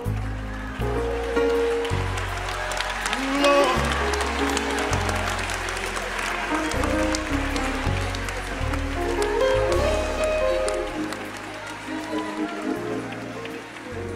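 Gospel worship music with deep held bass notes that change about once a second, under the chatter of a crowd and scattered clapping.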